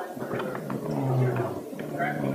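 A man's voice mumbling indistinctly, with one drawn-out syllable about a second in.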